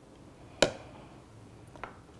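A small glass knocking: one sharp clink about half a second in and a fainter one near the end, as it is tipped over a plastic blender jar and then set down on the counter.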